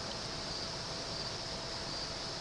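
Waterfall rushing steadily in the background.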